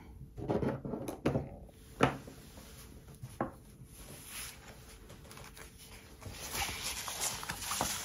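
A few light knocks of craft supplies being set down on a wooden tabletop, then sheets of specialty paper and card rustling and sliding as they are laid out, growing louder near the end.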